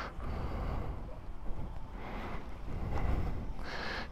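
Faint outdoor background noise: a low, steady rumble with no engine note.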